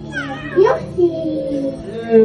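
A toddler's high voice making wordless, gliding cries that rise and fall, the kind of sound that resembles a cat's meow.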